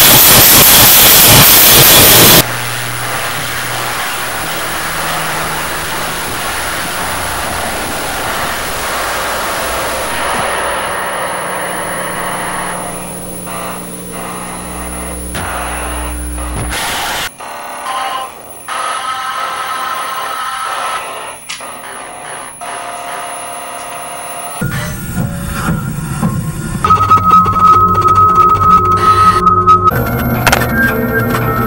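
Harsh noise cut-up: a loud wall of distorted noise cuts off abruptly about two seconds in. Quieter layered static and electronic drones follow, with a thin steady high whine. The sound then breaks into choppy, abrupt cuts, and loud noise returns near the end with a steady electronic tone.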